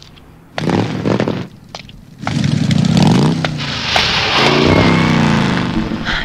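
Motorcycle engines revving and passing on a music video's soundtrack, their pitch sweeping down as they go by.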